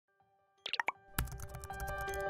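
Channel logo intro jingle: a quick run of three or four small pops about two-thirds of a second in, then a soft hit just after a second that starts a run of held musical notes.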